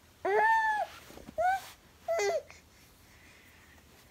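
A seven-month-old baby babbling: three short high-pitched vocal sounds, the first the longest, all within the first two and a half seconds.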